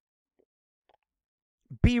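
Near silence during a pause in a man's talk, then his voice starts again near the end.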